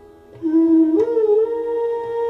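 Bansuri flute in Indian classical music: after a brief lull a note enters, slides up to a higher pitch and is held, with a single tabla stroke about a second in.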